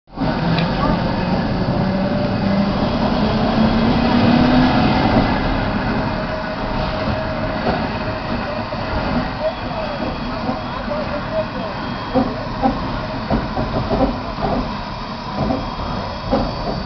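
Western Maryland 734, a 2-8-0 steam locomotive, turning on a turntable: a steady rumble and hiss, with irregular knocks from about nine seconds in, over people talking.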